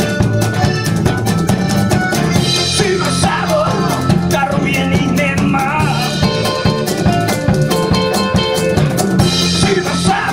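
Live blues band playing a passage without vocals: electric guitar, electric bass and a drum kit keeping a steady beat, with melodic lead lines over the top.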